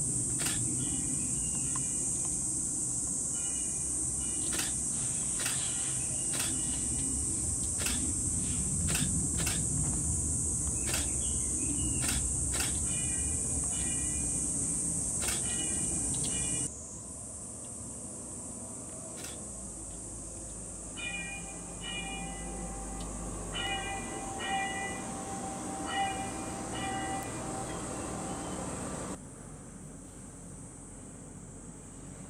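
Outdoor ambience: a steady high-pitched hiss over a low background rumble, with short repeated chirps and scattered clicks. It drops in level at a cut a little past halfway, and again just before the end.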